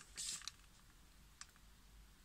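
Faint handling noise on a tabletop: a brief soft rustle near the start and a single small click a little past the middle, with quiet room tone otherwise.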